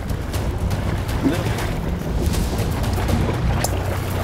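Steady low rumble of a fishing boat's engine under wind and water noise, with a few brief splashes near the end as a hooked dorado thrashes at the surface beside the hull.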